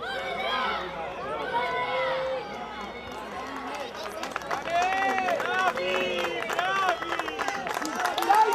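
Several voices shouting and calling out at once, the game's spectators and players on the field, growing louder in the second half. A rapid patter of clicks runs underneath from about three seconds in.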